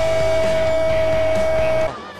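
A football commentator's long, drawn-out 'goool' call held on one steady high note over background music. It cuts off shortly before the end.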